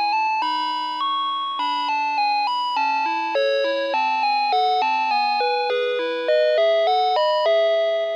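A Playskool Storytime Gloworm toy playing a simple electronic lullaby tune through its small speaker: a melody of clean tones stepping from note to note over a lower accompanying line, each note fading as it sounds.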